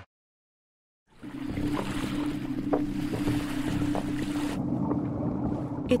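After about a second of silence, a boat engine's steady low hum with water washing around it and a few small clicks. The higher hiss drops away near the end, leaving the hum.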